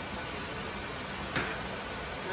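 Chicken and vegetables sizzling steadily in a frying pan, with one light click about one and a half seconds in.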